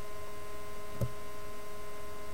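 Steady electrical hum of the recording setup, with several fixed tones held throughout, and a single short click about a second in.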